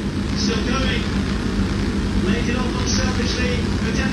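A steady low hum with a constant droning tone, and faint voices in the background.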